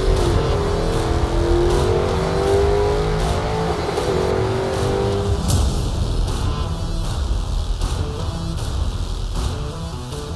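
Ford 7.3L Godzilla pushrod V8 in a Cobra Jet Mustang drag car, revving up and down over the first few seconds, then running lower and steadier as the car pulls away.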